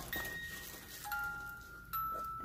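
A music box playing a few slow notes that ring on: one note, then about halfway through two new notes sounding together.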